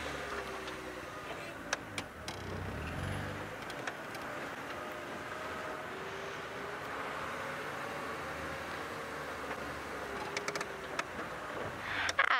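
Open safari game-drive vehicle driving along a sandy track, its engine humming steadily, with a few short clicks and knocks from the bodywork.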